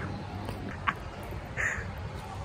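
A bird giving a short, harsh call about one and a half seconds in, with a brief sharp sound a little before it.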